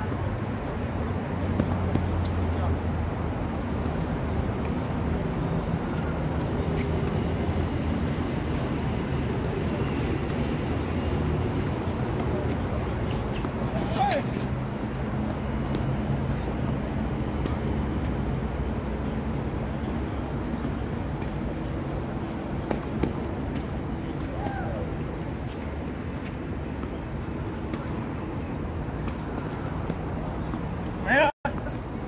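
Steady rumble of traffic on an elevated highway, with a few sharp tennis racket strikes on the ball, the clearest about halfway through.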